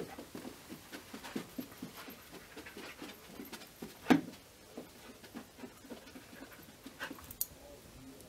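A dog panting as it searches the room for a scent. A sharp knock about four seconds in is the loudest sound.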